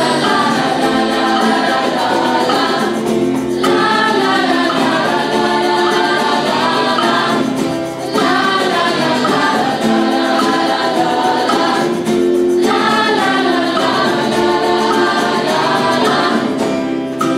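A mixed youth choir of girls and boys singing in unison or close harmony with acoustic guitar accompaniment, in phrases of about four seconds with short breaks between them.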